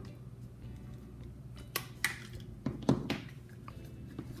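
Small pointed scissors snipping through a paper strip cut from a cup rim: a few short, sharp snips and clicks in the second half, over a faint steady low hum.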